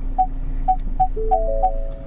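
Ford Focus parking-sensor warning beeps during automatic parking: short beeps repeating ever faster, turning about a second in into steady tones at a few pitches, the close-range warning as the car nears the end of the space.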